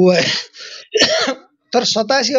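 A person clearing the throat twice, two short raspy bursts about a second apart, among bits of speech.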